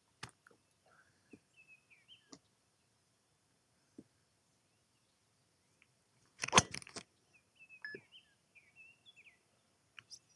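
A Mizuno ST190 driver striking a teed golf ball on a full-speed swing, one sharp impact about six and a half seconds in. Birds chirp faintly before and after the strike.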